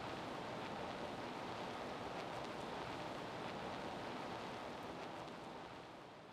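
Steady, even hiss with no speech or tones, fading out near the end.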